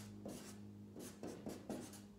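Blue marker pen writing on a large pad of squared paper: a series of short, faint strokes as a word is lettered out.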